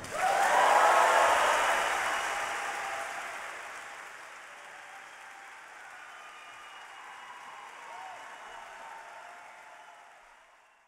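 Audience applauding after the chorus's singing ends. The applause is loudest just after the start and fades away over several seconds to a faint patter.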